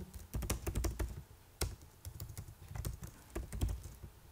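Typing on a computer keyboard: irregular key clicks, with one louder stroke about a second and a half in.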